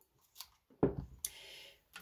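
Coffee sipped from a mug: a soft knock about a second in, then a short hiss.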